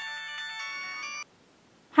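Electronic ringtone-like jingle of several held chiming tones, which cuts off suddenly a little over a second in.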